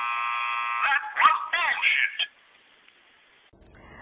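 Novelty 'bullshit button' going off: a steady electronic buzzer for about a second, then a short, loud recorded voice exclamation.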